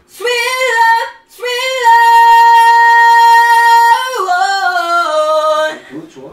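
Unaccompanied high head-voice singing, repeating the word "sweet" as a vocal exercise. A short note and a brief break are followed by a long note held at a steady pitch for about two seconds, then the voice steps down in pitch.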